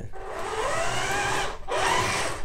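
SG 1203 1/12-scale RC tank's electric drive and metal gears whining as it accelerates across a wooden bench, the pitch rising as it speeds up. The whine drops for a moment about a second and a half in, then picks up again.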